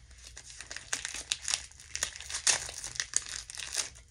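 Crinkling and rustling of a small wrapper or packet handled in gloved hands, in quick irregular crackles with a little tearing, as a syringe is unwrapped.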